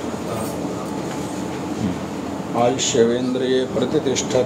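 Several people talking at once in a room, as a steady indistinct murmur. One voice becomes clearer and louder about two and a half seconds in.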